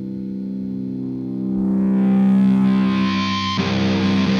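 Distorted electric guitar through an Orange amplifier, holding one chord that swells steadily louder; about three and a half seconds in a new chord is struck and the sound turns rougher.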